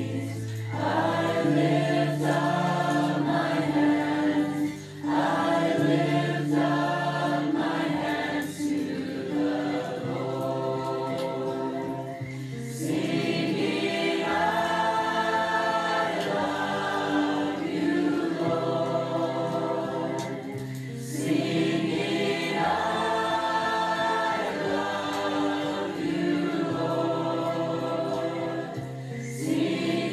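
A choir singing long held chords in phrases a few seconds long, with short breaks between phrases.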